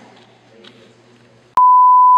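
Faint room sound, then about one and a half seconds in a click and a loud, steady 1 kHz reference test tone, the 'bars and tone' signal that goes with television colour bars.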